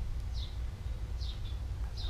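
A small bird chirping three times, each a short note sliding downward, about a second apart, over a steady low rumble.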